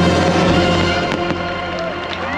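Fireworks bursting with sharp cracks and crackle over a held chord of the show's soundtrack music, which thins out about halfway through.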